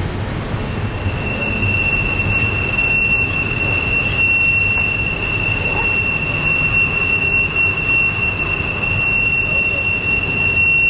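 Double-stack intermodal freight train rolling past, its steel wheels squealing in one steady, high-pitched tone that sets in about a second in, over the low rumble of the cars.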